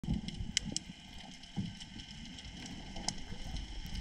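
Underwater ambience picked up by a camera in its housing: a low rumble of water movement with scattered sharp clicks and crackles, a few stronger clicks in the first second.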